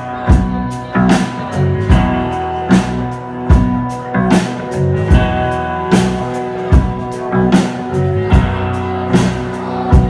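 Live rock band playing an instrumental passage: electric guitar, bass guitar and keyboard over a drum kit keeping a steady beat, with a loud drum hit about every 0.8 seconds.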